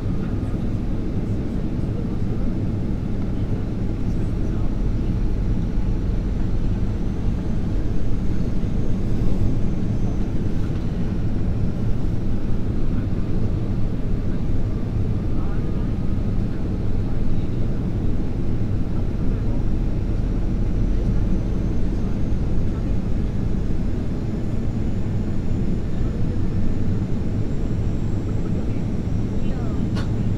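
Steady cabin rumble of an Airbus A340-300 on approach, heard from a seat beside the wing: low engine and airflow noise from its CFM56-5C turbofans, with faint whistling tones that drift slowly in pitch.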